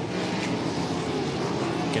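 Wingless USAC sprint cars' V8 engines running hard at racing speed on a dirt oval, a steady engine drone from trackside.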